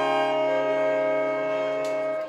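Saxophone ensemble, a baritone saxophone among them, holding one sustained chord.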